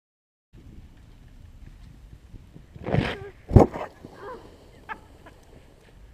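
Quiet outdoor background with a person's brief call about three seconds in, then a sharp knock that is the loudest sound, followed by a few short vocal sounds.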